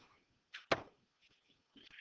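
A near-quiet pause with two short clicks, close together, a little over half a second in.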